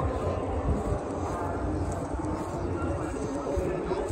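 Indistinct voices of people talking in the background over a steady low rumble, typical of wind on the microphone or distant vehicles.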